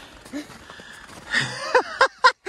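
Footsteps on snow-covered ground, with a brief vocal sound about a third of a second in. Near the end comes a louder rush of noise and a short exclamation from a person.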